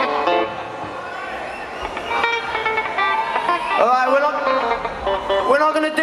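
Amplified electric guitar played loosely on stage through a concert PA: held notes and chords with a couple of pitch bends, quieter in the first few seconds and louder again near the end.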